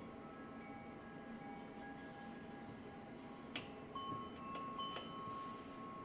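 Faint, sustained chime-like tones at several pitches, overlapping and changing, joined about two seconds in by high chirps, with a couple of light clicks.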